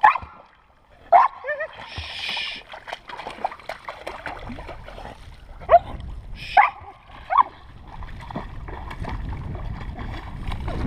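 A young dog whining and yipping in short, sharp high calls while splashing through shallow lake water; the loudest yips come in a quick run of three in the second half, with a burst of splashing about two seconds in.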